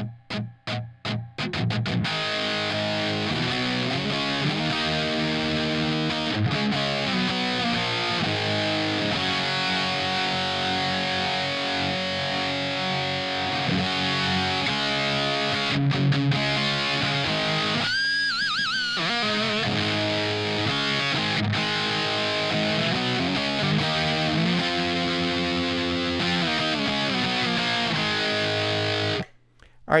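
Electric guitar played with heavy gain through a Marshmello Jose 3Way, a 50-watt point-to-point-wired amp head copying the Jose-modded Marshall circuit, on its preamp-in gain channel. It is recorded through a Universal Audio OX Box set to "Greenback Punch" with no effects. After a quick run of short picked notes, it plays distorted rock chords and riffs, with a brief lead lick on a bent, wavering note a bit past halfway, and stops abruptly near the end.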